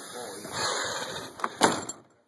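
Rustling handling noise with two sharp knocks about a second and a half in, the second louder, as someone moves about in a truck cab.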